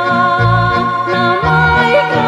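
A woman singing a Macedonian song with a folk band of violin and accordion, holding long notes over a steady beat that falls about once a second.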